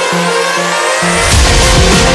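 Electronic background music: a rising synth sweep builds over the first second, then a heavy drop with deep bass and drums comes in.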